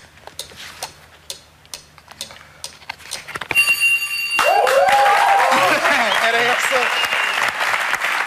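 Game-show countdown ticking, then a steady electronic buzzer sounds for about a second as the timer hits zero. Studio audience cheering and applauding, with shouts, follows as the loudest sound.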